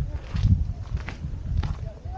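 A hiker's footsteps walking across a gritty rock slab, about two steps a second, over a low rumble.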